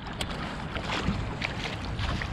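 A hooked largemouth bass thrashing and splashing at the water's surface as it is scooped into a landing net: several short, sharp splashes over steady wind rumble on the microphone.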